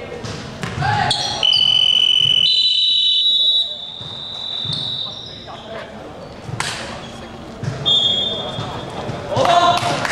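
Basketball being bounced on a hardwood court in a large hall, with a loud, shrill high-pitched tone lasting a few seconds from about a second in and a shorter one near the end.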